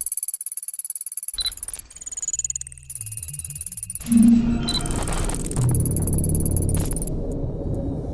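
Electronic sci-fi intro sound design: fast stuttering digital chirps and beeps over high steady tones, then a loud hit about four seconds in, opening into a dense low drone.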